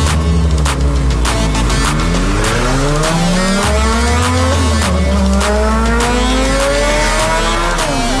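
Voge 650DS's single-cylinder four-stroke engine accelerating hard through the gears, its pitch climbing for a few seconds then dropping at a gear change about two-thirds of the way in and again at the end, over music with a heavy bass and a steady beat.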